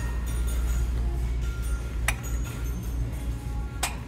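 Two sharp clinks of drinking glasses being handled on a wire store shelf, one about two seconds in and one near the end, over faint background music and a low steady hum.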